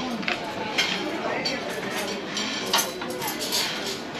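Background chatter of many people in a dining room, with several sharp clinks of dishes and cutlery.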